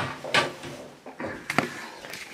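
About four brief rustles and knocks of household handling as a towel is folded and put away.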